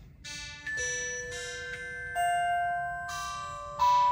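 Solaris synthesizer playing a bell pad patch ("Beauty Bells Pad") on its own: about six bell-like notes played one after another, each ringing on under the next.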